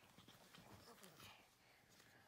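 Near silence: faint room tone with a few soft taps.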